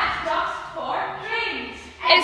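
A group of children chanting the words of a song together, their voices trailing off near the end.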